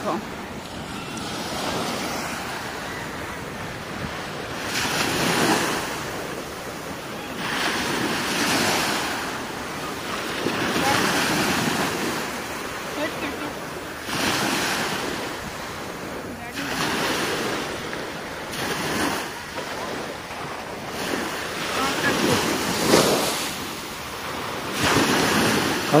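Sea waves breaking on the shore, the surf surging and falling back every two to four seconds.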